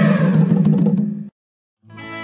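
Loud intro sound effect: a low rumbling swell with tones sliding downward, cut off abruptly about a second in. After a brief silence, instrumental music starts near the end.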